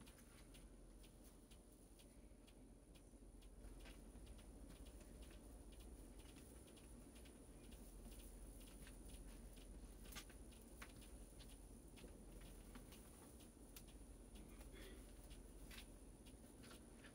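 Near silence with faint, scattered ticks and crinkles of plastic deco mesh and chenille pipe cleaners being handled and twisted onto a wire wreath form.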